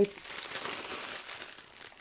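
Plastic packaging crinkling and rustling as it is handled and rummaged through by hand.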